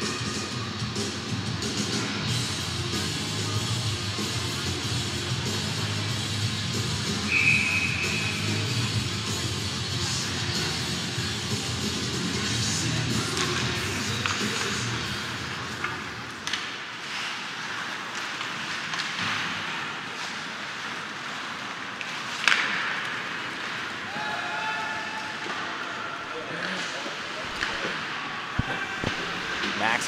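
Arena music over the rink's PA during a stoppage in an ice hockey game, ending a little past halfway. After it, the live rink sound of play: clacks of sticks and puck, one sharp crack about 22 seconds in, and players' shouts.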